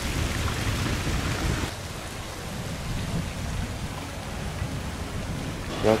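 Wind buffeting an outdoor microphone: a rough, rumbling rush that drops to a lower level about two seconds in.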